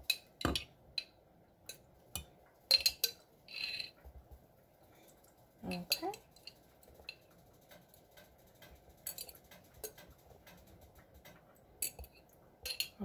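Metal utensil scraping and clinking against the inside of a glass jar while the last pieces are worked out: irregular sharp clinks, one with a brief glassy ring.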